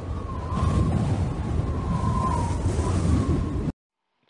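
Edited-in sound effect: a low rumbling noise with a faint wavering tone riding over it, swelling over the first second and then cutting off abruptly near the end.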